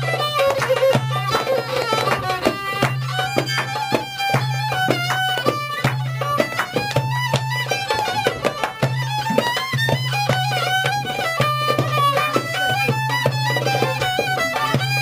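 Folk tune played on violin, piano accordion and goblet drum: the fiddle carries a quick, ornamented melody over a low held note and a running pattern of drum strokes.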